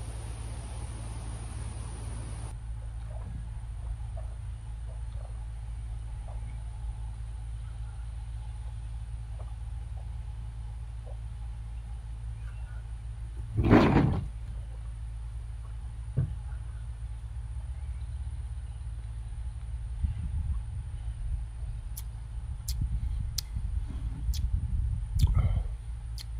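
Outdoor ambience with a steady low rumble and a faint steady high tone, broken about halfway through by one short, loud rising vocal sound and, near the end, a smaller one and a few faint clicks.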